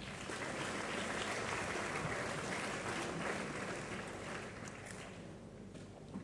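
Audience applauding, steady at first and then dying away over the last two seconds.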